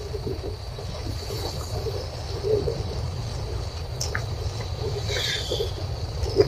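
Road traffic: a steady low rumble, with motorcycles and an autorickshaw approaching and passing.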